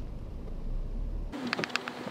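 An insect buzzing close by, a wavering steady hum that comes in suddenly about a second in, with a few light clicks under it.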